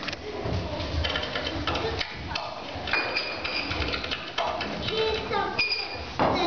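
Indistinct children's voices calling out, with a few short high-pitched held calls, over the low rumble of a large room.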